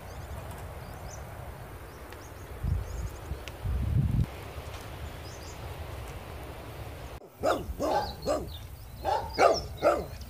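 Wind buffeting the microphone, swelling twice around the middle, then a run of short, loud, pitched animal calls over the last few seconds, heard as barking.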